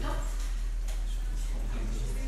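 Steady low electrical mains hum, with faint room noise and a light click about a second in.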